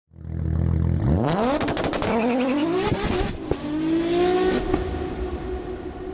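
Car engine idling low, then revving hard in several rising sweeps with sharp clicks, settling into a held tone that fades away. It is the sound design of a channel intro over the logo.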